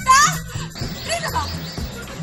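A woman's shrill, high-pitched cry right at the start, followed by more high voices, over background music.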